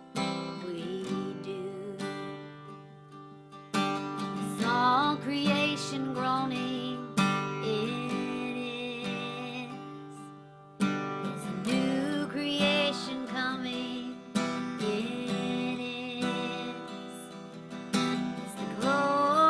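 A woman singing a slow worship song to her own acoustic guitar, strumming a fresh chord about every three and a half seconds and letting it ring under her voice.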